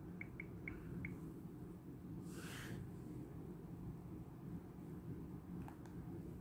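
Quiet room tone with a steady low hum, a few faint ticks in the first second, a brief soft hiss about halfway through and a faint click near the end.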